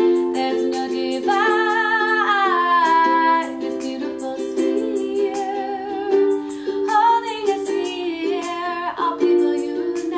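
Ukulele strummed in steady chords, with a woman singing over it in two phrases, the first starting about a second in and the second about seven seconds in.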